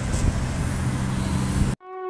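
Ryze Tello mini quadcopter's propellers running steadily as it climbs, a steady hum over rushing noise. The sound cuts off abruptly near the end.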